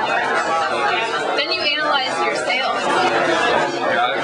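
Chatter of many people talking at once in a room, with overlapping voices throughout.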